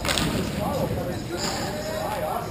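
Players' voices calling out across a large, echoing indoor hockey rink, with one sharp crack right at the start.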